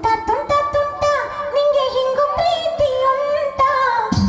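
A song with a voice singing a gliding, held melody over light, even high percussion; the deep bass beat drops out for this passage and comes back right at the end.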